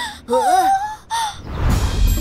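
Cartoon character voices giving two short gasping, worried cries, followed about a second and a half in by a low rumbling sound effect that swells into the next moment.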